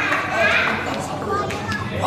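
Many children's voices chattering at once in a large hall, a steady babble with no single voice standing out.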